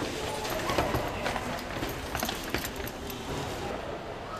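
Irregular footsteps and the knocking and jostling of sports equipment bags being carried, over faint background voices.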